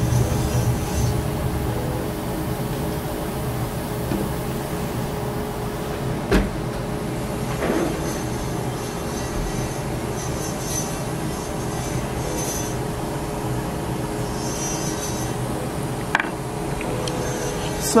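Small jeweler's gas torch burning with a steady hiss while it heats a gold earring post to flow the solder. Two light metallic clicks, about six seconds in and again near the end.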